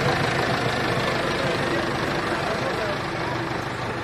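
Diesel engine of an HMT 5911 tractor running as the tractor drives through mud, its sound easing slightly as it pulls away.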